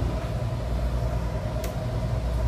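Steady low machinery hum inside a passenger ferry's air-conditioned deck, with a faint steady whine above it and a small click near the end.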